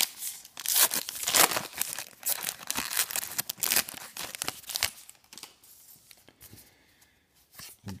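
A trading card pack's wrapper being torn open by hand, a rapid run of crackling tears and crinkles. It settles into softer rustling after about five seconds as the cards are handled.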